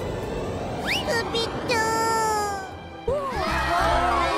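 Cartoon rocket rushing skyward: a steady hiss of exhaust with a quick rising whistle, then a drawn-out, slowly falling cartoon cry. About three seconds in, it cuts to a crowd chattering over music.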